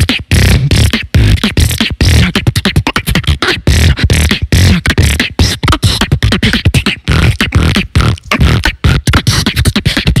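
Solo beatboxing into a handheld microphone: a fast, dense rhythm of mouth-made kicks and snares over a heavy bass.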